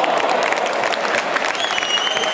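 Ice hockey crowd applauding, many hands clapping at once. A thin high whistle tone starts near the end and holds steady.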